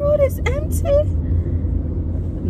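Steady low hum of a car driving, heard from inside the cabin, with a woman's voice talking briefly in the first second.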